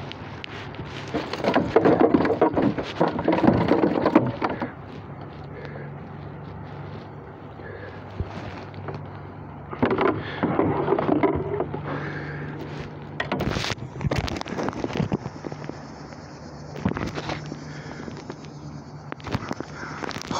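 Wind rushing over a handheld microphone in a canoe, in two loud gusts about a second and ten seconds in, with handling rustle. Near the middle come a few sharp knocks against the boat, over a faint steady low hum.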